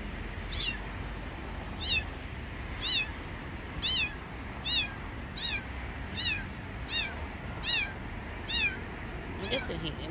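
A young kitten crying, a series of about eleven short, high-pitched meows, each rising then falling in pitch, coming regularly less than a second apart. They are the distress cries of a scared, hungry stray kitten.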